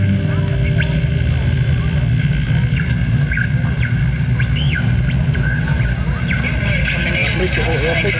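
Live metal band's PA holding a steady low drone between songs, with a few short shouts from the crowd; the drone thins near the end.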